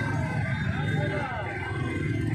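Crowd chatter over the low, steady rumble of an idling motorcycle engine.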